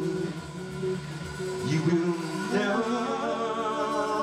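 Live band playing with two male voices singing; a long held note comes in about halfway through.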